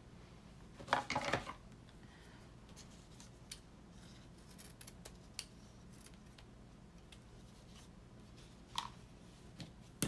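Scissors snipping: a quick run of sharp cuts about a second in, then faint scattered clicks of handling and one more sharp snip near the end.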